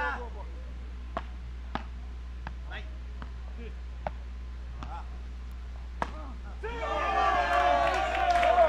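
Beach tennis rackets striking the ball in a rally: about five sharp pops a second or two apart. Near the end, voices rise as the point finishes.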